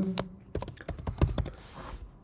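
Typing on a computer keyboard: a quick run of keystroke clicks lasting about a second, with a short soft hiss near the end.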